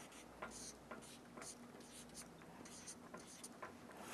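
Faint, short scratching strokes of a marker pen writing on a white board, coming in quick runs with brief pauses.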